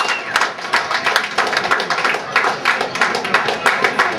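Audience clapping, a dense and irregular patter, mixed with crowd voices; a whistle trails off just at the start.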